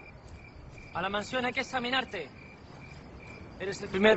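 Crickets chirping in short, regular high chirps as night ambience on a film soundtrack, with a man's voice speaking briefly about a second in and again near the end.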